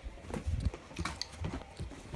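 Irregular soft knocks and rustles close to the microphone, a handful of short thuds about half a second apart, as a handheld phone is moved and brushed against fabric.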